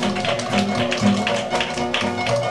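Jazz band of trombone, trumpet, clarinet, piano, bass, banjo and drums playing live: horn lines over a steady, evenly beaten rhythm.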